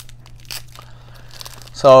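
Rigid plastic card toploaders clicking against each other and a plastic sleeve crinkling as a stack of cards is handled, a few faint light clicks and a brief rustle.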